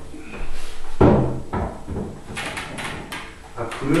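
Knocks and clatter of a decorative frame panel being handled and fitted onto a flat-screen TV: two heavier thuds about a second in, half a second apart, then a run of lighter clicks.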